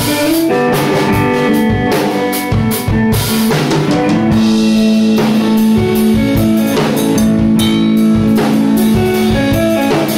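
Electric guitar and drum kit playing together as a live band. The guitar plays busy note lines, then holds one low sustained note from about four seconds in, over steady drum hits.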